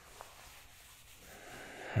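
Faint rustle of pillows and bedding as someone lies down, with a small tick just after the start and breathing that swells into a drawn-in breath near the end.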